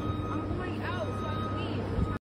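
A steady low hum with a continuous high-pitched tone running through it, under faint voices.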